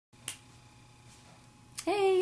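A single sharp click a fraction of a second in, then faint steady room hum; a woman's voice begins just before the end.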